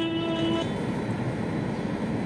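A held sung note ends about half a second in, leaving a steady hum of background noise.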